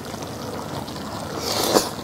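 A person chewing and slurping a mouthful of wet seafood stew, close to the microphone, with a sharper, louder slurp about one and a half seconds in.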